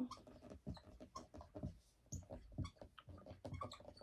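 Dry-erase marker writing on a whiteboard: a faint, irregular run of short squeaks and taps as the letters are drawn.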